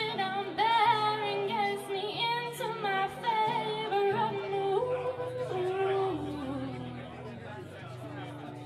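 A woman sings an ornamented melody to her own acoustic guitar chords, the voice bending and sliding quickly between notes. Near the end she steps down through a few held notes, then her voice drops out while the guitar plays on.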